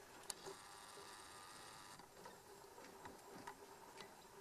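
Near silence: faint outdoor background with a single small sharp click near the start and a few fainter ticks.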